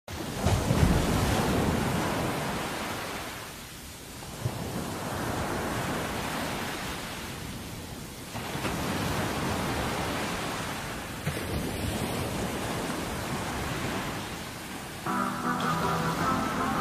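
Ocean surf washing in and pulling back in slow swells, one about every four seconds. Near the end, pitched music comes in over it.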